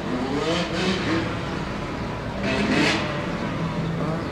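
Motorcycle engines revving in the street, their pitch rising and falling.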